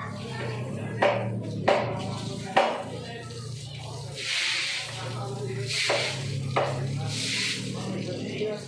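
Garden hose spraying water onto a concrete floor in two short hissing bursts. Sharp knocks come three times in the first three seconds and once more after six seconds, over background music.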